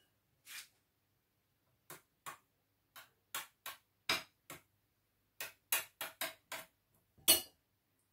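A kitchen utensil tapping against a dish while a layer of boiled potato is spread into it: about fifteen short, irregular clicks, the loudest near the end.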